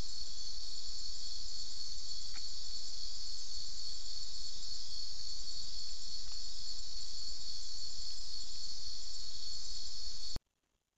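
Steady high-pitched chorus of night insects, crickets among them, running without a break. A few faint clicks sound over it, about two and six seconds in.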